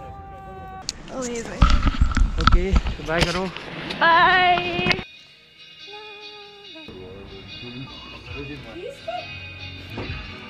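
Wind rushing over the microphone with a person's wavering, wordless shouts, loud for about four seconds from about a second in, set between stretches of background music.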